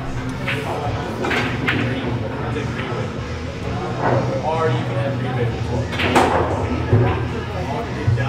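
A pool shot: one sharp click of cue and balls about six seconds in, over steady background voices and music in the billiard hall.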